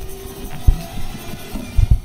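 Opening of a K-pop music video soundtrack: a few deep, sudden low booms over a faint background, one about a second in and the loudest pair near the end.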